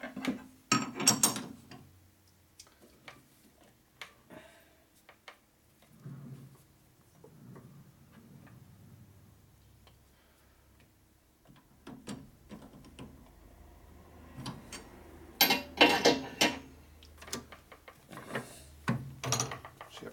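Metal clicks and clanks of a chuck key working the jaws of a lathe's four-jaw chuck as a part is clamped and centred, in two loud clusters, about a second in and again near three-quarters of the way through, with quiet stretches between.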